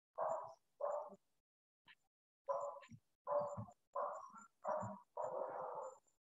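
A dog barking repeatedly, about seven barks in quick succession with short gaps between them, the last one drawn out, picked up by a participant's microphone on the video call.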